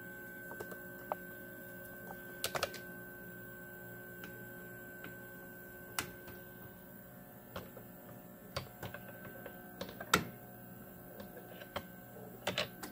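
Faint, steady electrical hum from the running inverter, with scattered small clicks and taps as metal test-lead probes are handled and pressed against the output terminal screws.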